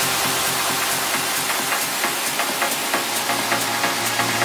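Trance music in a breakdown with the kick drum gone: a hissing noise wash over steady quick hi-hat ticks, with a low bass note coming in near the end.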